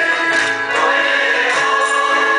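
A mixed group of mostly women singing a song together in unison, with hand claps keeping time.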